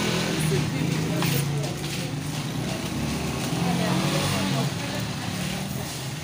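An engine running steadily with a low, even hum, slightly quieter near the end, with voices in the background.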